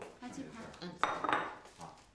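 Plates clattering as they are set down on a wooden dining table, with the loudest clinks about a second in.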